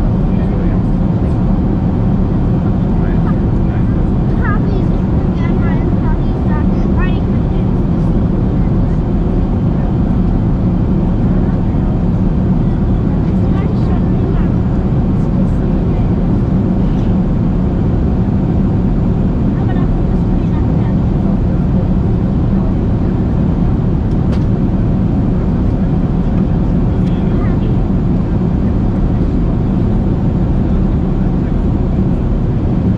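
Steady in-flight cabin noise inside a Boeing 747-400 airliner: a constant low rumble of airflow and engines. Faint, indistinct voices are heard now and then.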